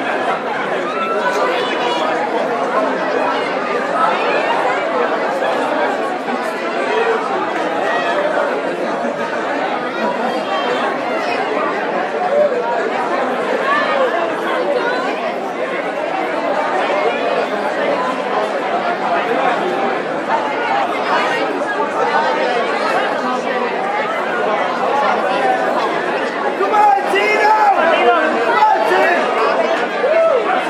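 Crowd chatter in a large hall: many voices talking over one another at once, steady throughout and a little louder near the end.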